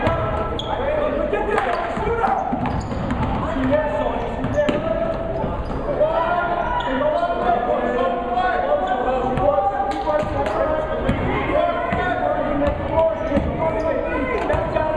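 Basketball dribbled on a hardwood gym floor, with sharp bounces, amid a continuous hubbub of players' and spectators' voices.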